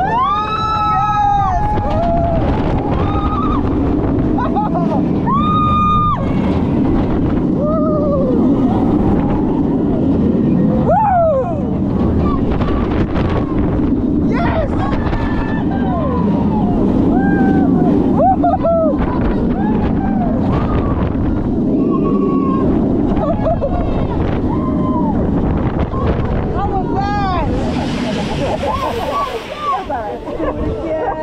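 B&M Dive Coaster train dropping and running through its course, with a loud, steady rush of wind on the microphone and the train's rumble on the track. Riders scream and yell over it, most around the drop at the start.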